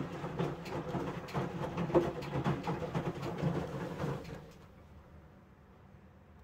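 Samsung WW75TA046TE front-loading washing machine drum turning with wet laundry, water and clothes swishing and knocking over a low motor hum. About four seconds in the drum stops and the sound drops away to faint ticks.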